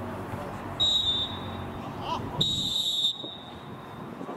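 Referee's whistle blown twice: a short blast about a second in, then a longer blast that stops sharply, over faint voices from the pitch.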